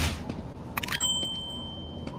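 Horror film trailer sound design over a low background noise: a quick cluster of sharp clicks a little before the middle, then a high steady ringing tone held for about a second.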